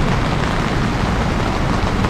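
Steady rushing hiss of rain falling on an umbrella, with a swollen, fast-running river alongside.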